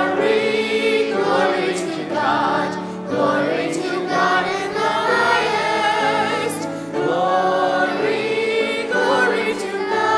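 A hymn sung by a cantor and a congregation, with piano accompaniment, filling a reverberant church.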